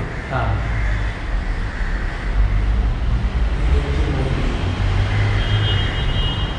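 A steady, wavering low rumble with an even hiss above it, and a faint high tone near the end.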